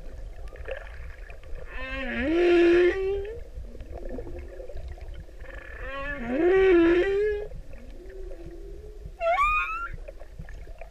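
Male humpback whale singing: two long moans, each rising in pitch with a rough upper edge, about four seconds apart, then a shorter upswept cry near the end. A steady low rumble runs underneath.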